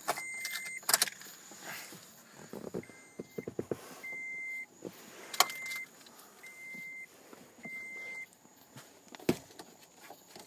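A car's electronic warning chime: six short single-pitch beeps, most about a second apart, one of them fainter. Sharp clicks and knocks of handling come between them, the loudest about halfway through.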